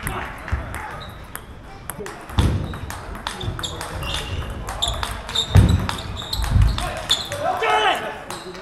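A table tennis rally: the ball clicking sharply off rackets and table many times, with a few heavy thuds of footwork on the wooden floor. A voice is heard near the end as the point finishes.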